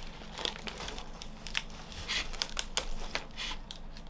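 Packing material crinkling and rustling, with irregular small clicks, as hands rummage in a cardboard box and lift out a plastic pot.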